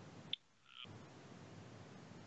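Faint steady hiss of an audio line, broken about a third of a second in by one sharp click. A half-second dropout follows, holding only a faint short high chirp, and then the hiss returns.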